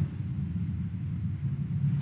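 Low, steady background rumble of the church's room noise.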